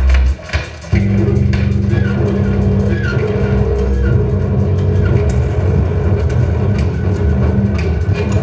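Live electronic music: loud, low droning tones that cut out briefly and come back about a second in, with short chirping blips above them.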